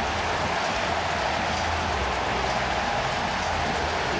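Steady noise of a large stadium crowd cheering, the home crowd's reaction to a sack of the visiting quarterback.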